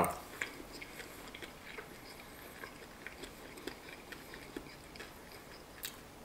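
Faint, irregular crunching and clicking of a person chewing a bite of crispy fried chicken.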